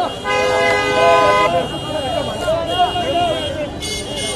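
A car horn sounds once for about a second, beginning just after the start, over a crowd of voices shouting and calling.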